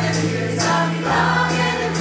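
A choir and lead singers performing a Norwegian folk-rock song live with a band: the voices sing a chorus line over steady bass notes, with a few drum or cymbal strokes.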